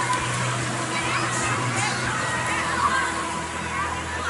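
A crowd of children shouting and squealing while playing in a shallow foam pool, with water splashing and music playing underneath.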